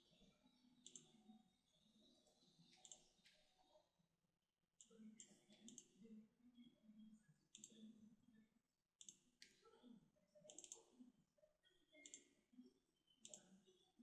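Very faint computer keyboard keystrokes and mouse clicks, scattered single clicks about once a second, almost at the level of silence.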